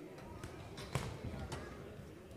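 Footsteps on the boxing ring's canvas floor: three dull thumps about half a second apart, the one about a second in the loudest.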